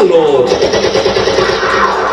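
A fast rattling roll over a loud PA voice and crowd noise, with the voice's pitch gliding down in the first half second.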